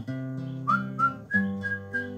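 Acoustic guitar picked under a whistled melody. The whistle comes in a little under a second in and moves through a few clear held notes.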